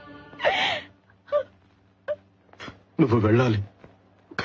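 A woman crying: a breathy sob about half a second in, then short catching breaths, and a longer low-pitched cry near the end.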